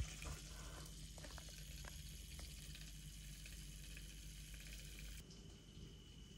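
Handheld milk frother whisking milky coffee in a ceramic mug: a faint, steady hiss of liquid being churned, with a few light clicks early on.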